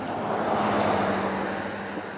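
A motor vehicle passing on the road close by: a steady hum of engine and tyres that swells and then eases.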